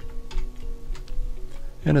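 A few light computer keyboard keystrokes, scattered clicks as a formula is typed and entered, over soft background music with held notes.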